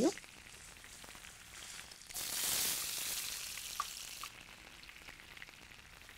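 Chopped onions frying in hot oil in a pan. About two seconds in, tomato puree goes into the pan and sets off a sudden burst of loud sizzling that lasts about two seconds and then dies back to quieter frying. A wooden spoon stirs throughout.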